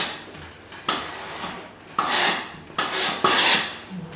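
Steam-generator iron pushed across a cotton lab coat on an ironing board in about four short strokes, each a noisy swish that starts sharply and fades.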